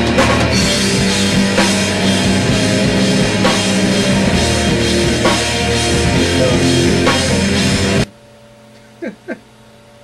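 A heavy rock band playing electric guitars and drum kit at full volume, with steady drum hits throughout. The music cuts off abruptly about eight seconds in, leaving a low room hum broken by two short sounds.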